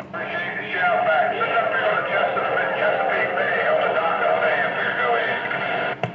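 A distant station's voice received over single-sideband skip on a Stryker SR-955HP CB/10-meter radio, heard through its speaker: a thin, garbled male voice that starts with a click and cuts off suddenly as the other operator unkeys.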